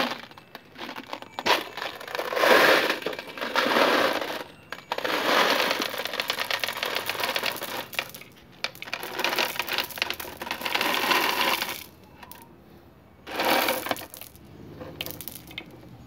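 Small glass marbles pouring out of a plastic bottle into a terracotta pot, a dense clicking clatter as they rattle against each other, the pot and the soil. It comes in about four pours separated by short pauses, the last one brief.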